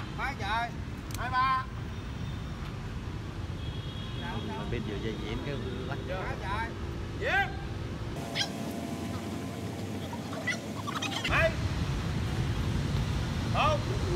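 Outdoor park ambience: a steady low rumble of city traffic, with short bird chirps scattered through and faint voices in the background.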